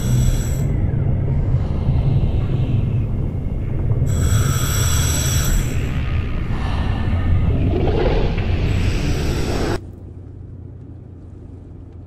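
Dramatic title-sequence soundtrack: a deep, loud rumbling drone with two bright ringing swells. It cuts off suddenly near the end, leaving the quieter low hum of a car's cabin.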